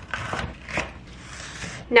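Chef's knife slicing a green bell pepper on a wooden cutting board: a few quick, sharp knife strikes against the board in the first second, then quieter.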